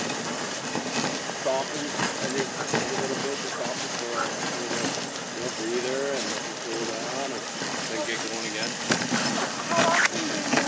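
A dog sled running over a packed snow trail: a steady hiss with scattered knocks and rattles from the sled, and indistinct voices talking over it.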